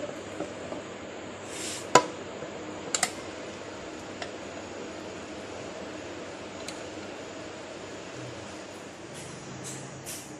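A steel spoon clicking against a ceramic plate a few times while scooping soft butter, the sharpest click about two seconds in and a quick double click a second later; after that only a steady low background hiss.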